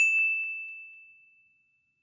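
A single high bell ding, struck once and ringing out, fading away over about a second and a half.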